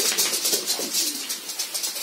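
Rapid clicking and scrabbling of a small terrier's claws on laminate flooring as she runs about.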